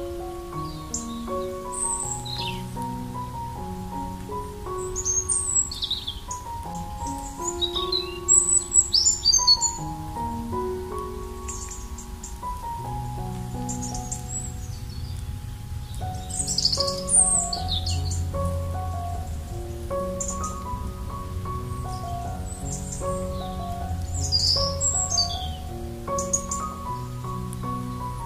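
Soft piano music playing slow held notes, with songbirds chirping and singing over it. The bird calls come and go, busiest about eight seconds in, around seventeen seconds, and near the end.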